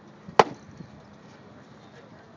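A wooden baseball bat striking a pitched ball: a single sharp crack about half a second in.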